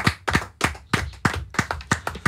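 Hand clapping: a steady run of sharp claps, about four a second.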